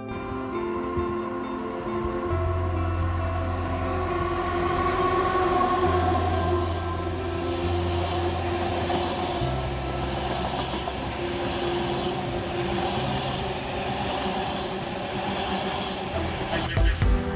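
Long passenger train of coaches running past on the main line: a steady rolling noise of wheels on the rails, with music playing under it.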